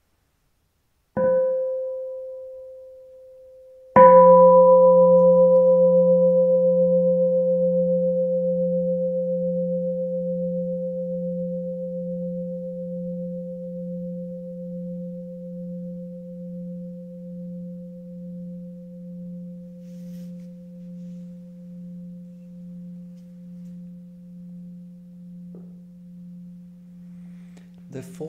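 A meditation bell is struck lightly once, then given a full strike about three seconds later. This is the Plum Village way of waking the bell and then inviting it, a signal to stop and return to mindful breathing. The full sound rings for over twenty seconds, fading slowly with a gentle wavering.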